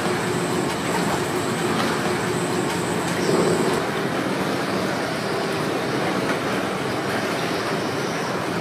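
Trash conveyor machinery of The Ocean Cleanup's Interceptor 002 running: a steady mechanical noise with a faint low hum. A thin high whine stops a little before halfway.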